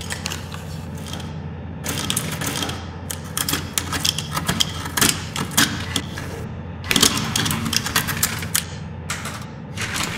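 Metal hand tools prying and working at a window frame in a forced-entry test: rapid, irregular clicks, scrapes and knocks, busiest from about two to six seconds in and again from seven to nine seconds, over a steady low hum.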